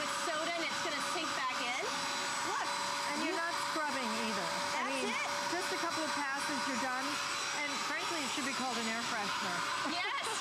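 Bissell Spot Clean Pro portable carpet deep cleaner running, a steady motor-and-suction whir with a constant hum, as its hose tool scrubs and extracts a muddy stain from carpet.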